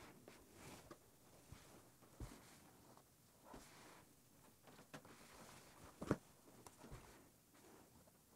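Near silence broken by a few faint taps and soft rustles of cotton quilt pieces and an iron being handled, the clearest tap about six seconds in.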